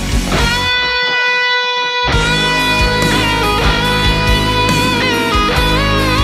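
Lead electric guitar (a PRS) playing a solo over a rock backing track. Early on it holds one long, ringing note while the backing drops out. The band comes back in at about two seconds and the guitar carries on through further phrases.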